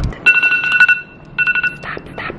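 Electronic alarm tone ringing in two short bursts, the first under a second and the second about half a second, each a rapid pulsing beep on two steady pitches.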